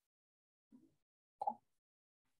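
Near silence on a video-call line, broken once about a second and a half in by a short, sudden sound.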